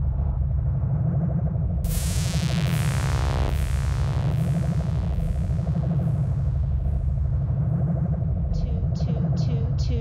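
Old-school psytrance intro: a steady low synthesizer drone. About two seconds in, a bright falling synth sweep starts and repeats about twice a second as a string of descending zaps. Near the end, a pulsing pattern of bright ticks, about three a second, comes in with wobbling synth notes.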